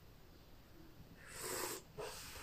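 Tea slurped from a ceramic tasting spoon: one short, airy slurp about a second and a half in, drawing air in with the liquid as tasters do to spread the tea over the palate.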